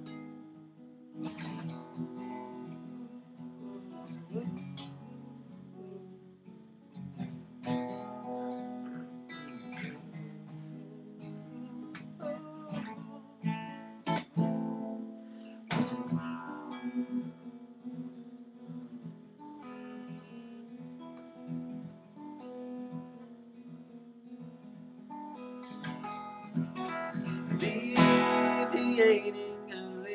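Steel-string acoustic guitar played solo, strummed chords ringing on, growing louder a couple of seconds before the end.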